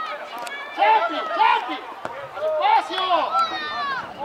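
Loud shouting voices across an outdoor football pitch during play: several short calls one after another, the last one falling sharply in pitch near the end.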